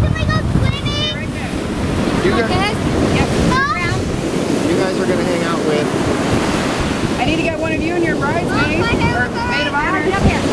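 Wind buffeting the microphone over steady ocean surf, with scattered high-pitched cries in the background, busiest near the end.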